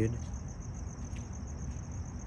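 Crickets trilling in a steady, high, even chirr, over a faint low rumble.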